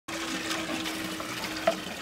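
Water running from a well's tap and splashing into a metal basin below, a steady stream.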